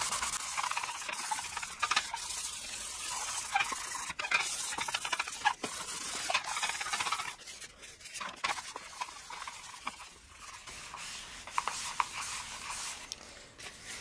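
Scotch-Brite abrasive pad scrubbing a faded plastic body panel in quick back-and-forth strokes, a dry scraping rub. About seven seconds in the scrubbing stops, and only light handling of the plastic panel is heard.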